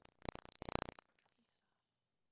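Faint, indistinct speech for about a second, then the sound cuts off abruptly to near silence.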